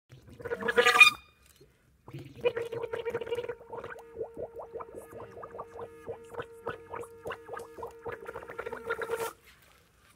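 Clarinet played with its bell dipped in a puddle: a short loud burst about a second in, then a long held note that bubbles and gurgles through the water, cutting off just before the end.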